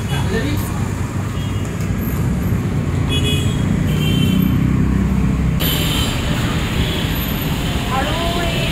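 Steady road traffic noise, a continuous low rumble of passing vehicles.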